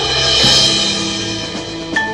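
Marching band playing sustained chords, with a loud percussion crash about half a second in and a sharp hit near the end.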